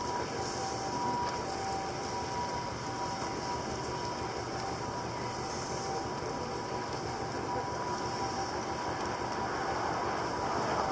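Steady city background noise, the hum of distant traffic, with a faint steady two-note whine that fades after the first few seconds.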